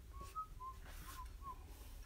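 A person whistling five short, quick notes around one pitch, the second a little higher.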